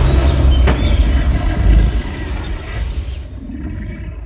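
Logo-sting sound effect: a sharp hit at the start followed by a deep rumble, with a musical tone over it, that fades away through the rest of the sound.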